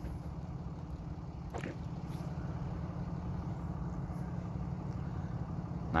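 Steady low rumble of a car engine running as the vehicle rolls slowly along a road.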